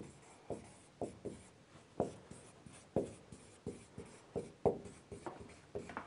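Marker pen writing on a whiteboard: a run of short, irregular strokes as words are written out letter by letter.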